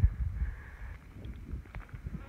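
Wind gusting across the microphone, an uneven low rumble as a cool breeze comes through.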